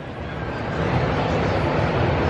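Steady rushing outdoor noise with no clear tones. It swells over the first second and then holds.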